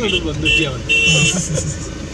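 People talking in Hindi inside a moving vehicle, over steady engine and road rumble.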